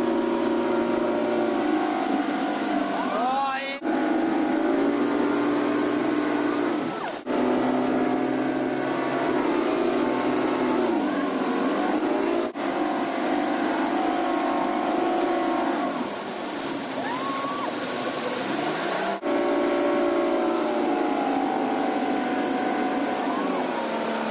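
Speedboat engine running under load while towing tubes, its pitch dipping and rising a few times, over a rush of wind and water spray. The sound breaks off briefly four times.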